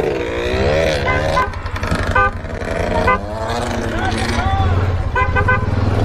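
Quad bike engine running steadily under the ride while a vehicle horn toots in short beeps: a couple about a second in, another at about two seconds, and a quick run of three near the end.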